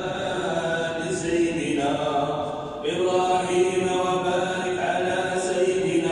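Religious chanting by a voice in a large mosque prayer hall, long held melodic notes with a short break about three seconds in.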